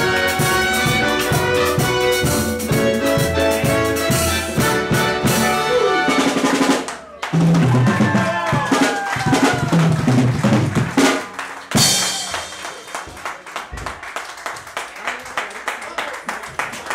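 A live band playing the end of a song: singing and instruments over a steady drum and percussion beat, a short break about seven seconds in, then the band comes back in and closes on a final hit about twelve seconds in, followed by scattered clapping.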